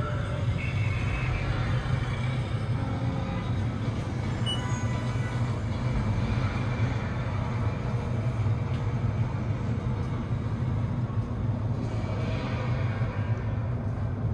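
Steady low rumble of the One World Trade Center high-speed observatory elevator cab climbing, with faint music from the cab's video-screen show over it.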